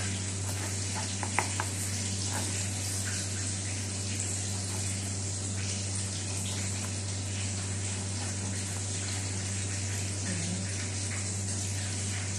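A knife slicing strawberries on a plastic cutting board: a few light taps of the blade on the board in the first few seconds, over a steady hiss and low hum.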